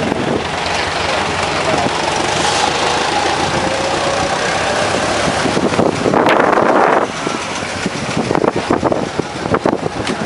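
Vintage car engines running as cars roll past at low speed, with a louder rush lasting about a second around six seconds in as one car passes close.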